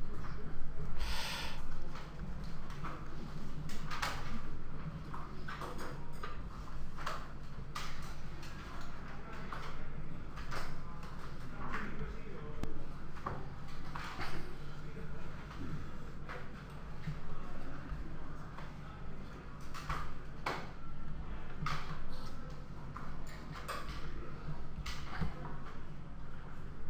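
Irregular knocks and clunks from building work, one every second or two, over a steady low hum.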